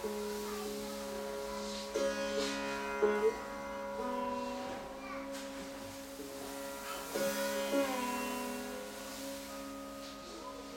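Live acoustic drone music: several steady held tones layered together, a few notes bending in pitch, and a handful of struck accents about two, three and seven seconds in.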